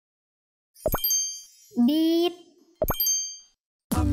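Two cartoon sound effects about two seconds apart, each a quick upward pop followed by a short bright chime ding. A voice says a short word between them, and music starts at the very end.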